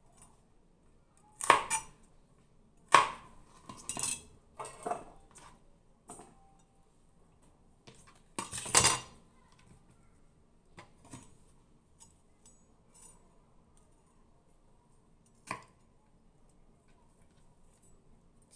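Irregular sharp knocks and clatters of a chef's knife on a plastic cutting board as celery stalks are cut and handled, about six separate sounds with quiet gaps between, the loudest past the middle.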